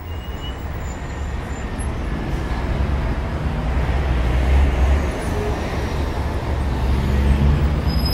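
A steady, deep rumbling noise with a hiss over it. It fades in and grows a little louder, with a few faint high chirps on top.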